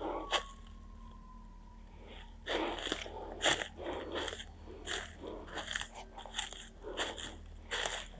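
Footsteps crunching on dry fallen leaf litter. They start a couple of seconds in and go on at about two steps a second.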